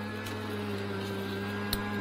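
Crafter's Companion Gemini Junior electric die-cutting machine running, its motor driving a die and cardstock through the rollers with a steady hum that rises slightly in pitch just after the start.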